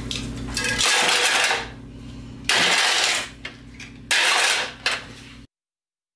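Metal clattering like kitchenware knocking together, in three loud bursts with a shorter fourth, over a steady low hum; it cuts off suddenly near the end.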